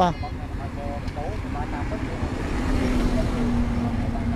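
A road vehicle passing close by: a low engine hum and road noise that swell gradually, with faint voices about a second in.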